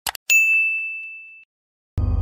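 Two quick mouse clicks and then a single bright bell ding that rings out and fades over about a second: the click-and-notification-bell sound effect of a subscribe-button animation. Music comes in just at the end.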